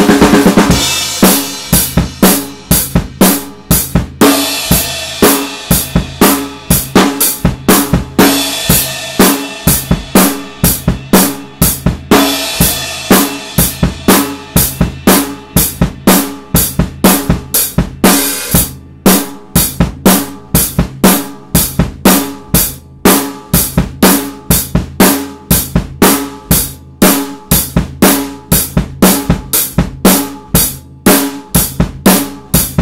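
Ludwig drum kit with Zildjian cymbals played in a steady mid-tempo rock beat, bass drum and snare hits alternating with cymbals, with a cymbal crash ringing out at the start.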